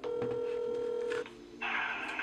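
Phone ringback tone through a smartphone's speakerphone: one steady ring, about a second long. Near the end the call picks up and a recorded voicemail greeting begins, thin and phone-band.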